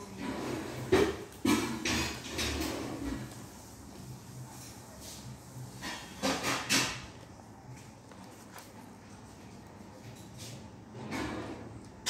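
Handling noise from a paper sketchbook: stiff pages rustling and the book knocking and bumping as it is turned and held up, with a cluster of sharp knocks in the first few seconds and another about six seconds in.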